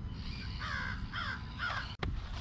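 A crow cawing three times in quick succession, harsh calls about half a second apart, over a low steady rumble.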